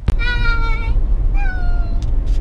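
A young girl's voice giving two short, high-pitched calls, the second falling in pitch, over the steady low rumble of a car driving.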